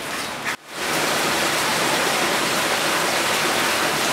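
Muddy floodwater rushing steadily, with a short break just over half a second in.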